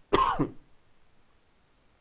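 A man coughs once into his hand to clear his throat, a single short burst just after the start.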